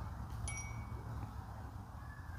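Quiet background with one short, high, bell-like ring about half a second in.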